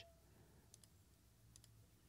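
Near silence: room tone, with two faint pairs of small clicks.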